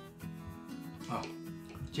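Light background music playing steadily, with a brief vocal murmur from a person tasting food about a second in.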